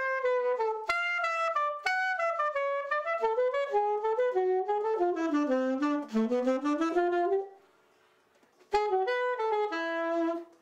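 Alto saxophone playing a single melodic line in running phrases, with no accompaniment heard. It breaks off for about a second near the end, then comes back in.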